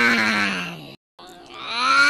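A drawn-out, low, moaning cartoon voice as a sleepy sound effect, its pitch sliding slowly downward. The first moan fades out about halfway through, and after a brief silence an identical one begins.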